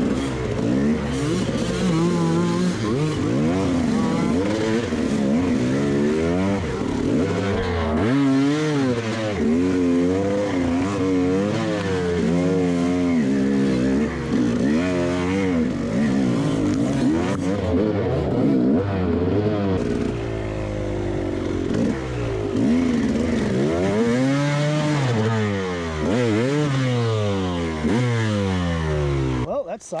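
Two-stroke KTM enduro bike engine revving up and down hard and repeatedly under throttle as it is worked through mud and roots, its pitch swooping up and down every second or so. Right at the very end the engine sound cuts off abruptly as the bike lies down in the mud, a stall after a fall.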